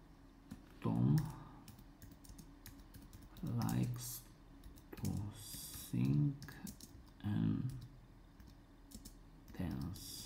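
Typing on a computer keyboard: a run of light key clicks.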